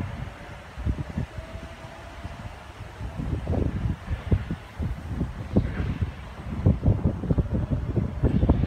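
Wind buffeting the microphone in irregular low gusts, stronger from about three seconds in, over the fading sound of an H-set OSCAR double-deck electric train pulling away from the platform.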